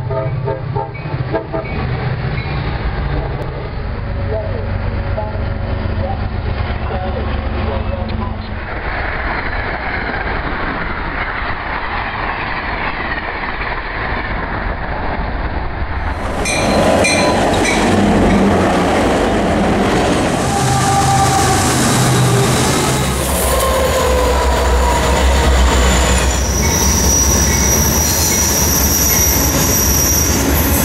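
Trains passing, heard across several recordings strung together: locomotive engines running, wheels on rail and horn blasts. The sound changes abruptly about halfway through, where one recording cuts to the next.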